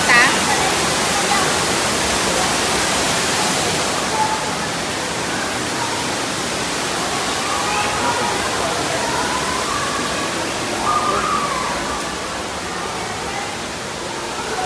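Steady rush of falling water from a pool's artificial rock waterfall, with faint voices in the background. The rush turns duller about four seconds in and quieter near the end.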